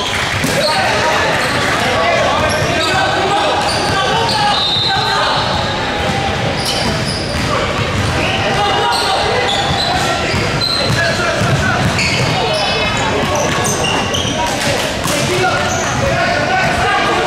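Basketball game on a hardwood gym floor: the ball bouncing, sneakers squeaking in many short high chirps, and players calling out, all echoing in the large hall.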